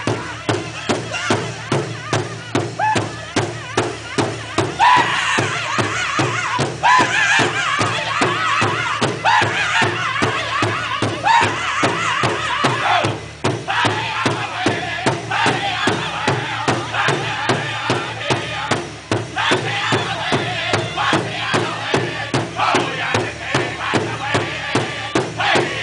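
Powwow drum group singing in high-pitched voices over a large bass drum struck in an even, steady beat by several drummers at once. The singing grows louder about five seconds in and breaks briefly twice, while the drumbeat carries on.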